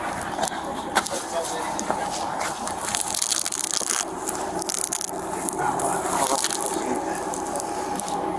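Scraping and crackling handling noise as a body-worn camera rubs against clothing and a truck tyre while gloved hands work at the wheel, densest about three to four seconds in. A steady machine hum runs underneath.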